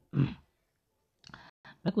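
A man's voice speaking Hindi ends a phrase, then a pause with a couple of soft clicks just before he speaks again.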